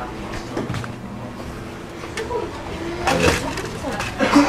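Background voices murmuring in an indoor shop, with a couple of light clicks about a second in and again about three seconds in.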